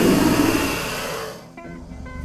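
Leaves and foliage rustling in a loud hiss as a cartoon rooster pushes his head into a jungle bush, fading out after about a second and a half. Background music carries on underneath.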